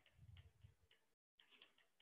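Near silence, with a few faint ticks of a stylus tapping a tablet screen during handwriting.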